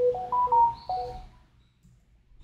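A short electronic chime melody: three quick rising notes, then two more, fading out about a second and a half in.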